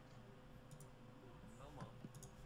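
Near silence: room tone with a faint steady hum and a few faint clicks, a couple near the middle and one near the end.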